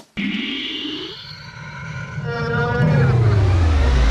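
An edited-in transition sound effect. A tone climbs in pitch over the first second, then a deep sweep falls steadily in pitch, growing louder toward the end.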